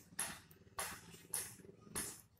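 Ballpoint pen scratching across ruled notebook paper while writing a word, as four short faint strokes about half a second apart.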